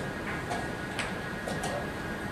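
A few sharp wooden clicks of chess pieces being set down and chess clock buttons being pressed around a tournament playing hall, one about halfway through and two more close together soon after.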